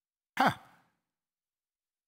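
A man's single short, breathy "huh" that falls in pitch, about half a second in.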